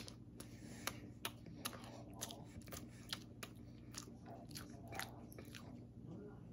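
A person chewing food with the mouth close to the microphone: faint, irregular wet clicks and crunches, about two or three a second.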